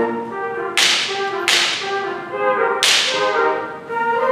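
School concert band playing a softer passage of held wind chords, cut by three sharp, bright percussion strikes that each ring out briefly: one just under a second in, one at about a second and a half, and one near three seconds.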